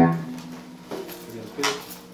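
Electric guitar being handled through a tube preamp and amp: a sound that was just struck dies away, low strings keep ringing quietly, and a few light clicks and knocks come as the guitar is moved.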